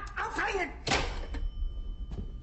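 A voice speaking briefly, then a single sharp thud about a second in, followed by a quieter stretch.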